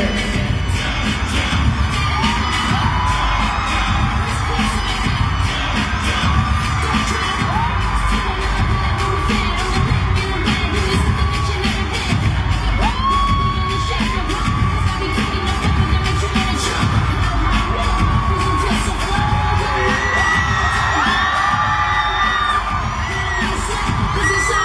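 Loud concert arena sound: backing music playing while a crowd of fans screams and cheers, with many high individual screams rising and falling over it.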